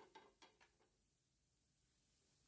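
Near silence: faint room tone, with four faint short clicks in the first second.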